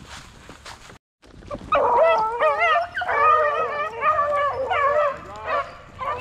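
A pack of beagles baying, several dogs howling over one another in wavering tones. It starts just under two seconds in and tails off near the end.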